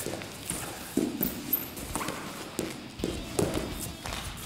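Wrestlers' feet stepping and stomping on a padded wrestling mat during a fast clinch throw, heard as several short, sharp thuds and scuffs.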